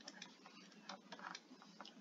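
Near silence with faint, irregular light ticks of a stylus tapping and sliding on a touchscreen as it writes.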